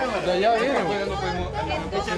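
Only speech: people talking over one another, with no words made out.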